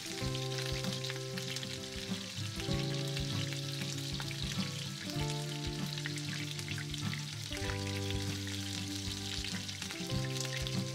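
Meat and cabbage patties frying in hot vegetable oil in a pan: a steady sizzle with scattered crackles and pops, with occasional soft knocks as they are turned with a silicone spatula. Soft background music with sustained chords changing about every two and a half seconds plays underneath.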